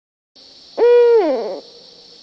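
A single loud hooting note that holds steady for a moment and then slides down in pitch, over a faint steady hiss.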